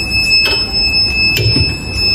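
Heat press timer buzzer sounding one steady, high-pitched beep, the signal that the pressing time is up. Two short knocks come through it, at about half a second and about a second and a half in.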